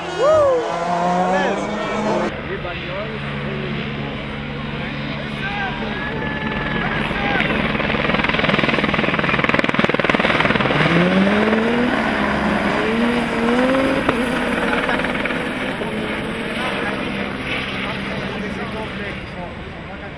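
Rally cars' engines at full stage pace: a car revving hard in the first two seconds, then a Peugeot 207 S2000 approaching on a snowy stage, loudest around the middle as it passes. A few rising revs through upshifts follow as it pulls away.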